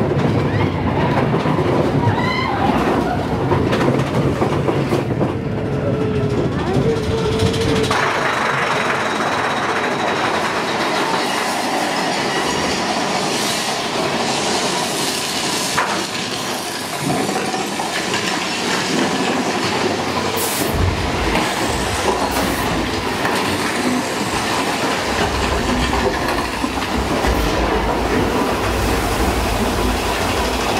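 Mine-train roller coaster cars running along a steel track: a loud, continuous rattle and rumble of wheels over rails, with a brief wheel squeal about six seconds in. A deeper rumble joins in over the last few seconds.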